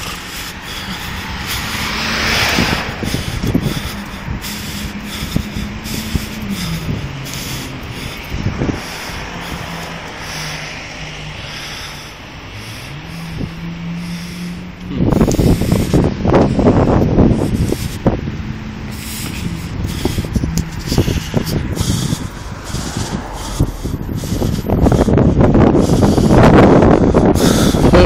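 Outdoor roadside noise: wind rumbling and buffeting on the microphone, loudest in two gusts in the second half. Under it is a steady low engine hum that drops in pitch, then rises again.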